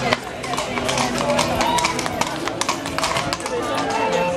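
Horse's hooves clip-clopping on a paved street as it pulls a carriage, an irregular run of sharp clicks, with people talking.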